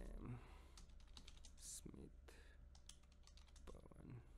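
Quiet typing on a computer keyboard: an uneven run of key clicks as words are entered, over a faint low hum.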